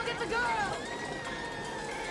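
Film soundtrack: faint shouted dialogue in the first second over a steady rush of storm wind and rain.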